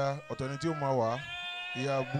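A man's wordless voice into a handheld microphone, a quick run of short pulses on one steady pitch that sounds like bleating, then a falling glide and a held note.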